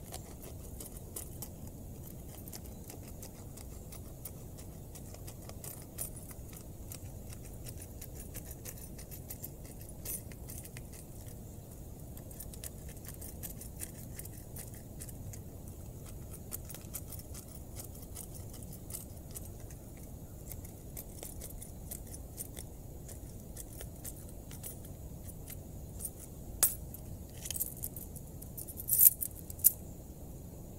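A small hand-held can opener working its way around a metal tin of smoked ham: a long run of fine, rapid metallic ticks and scrapes, with a few louder sharp clinks near the end.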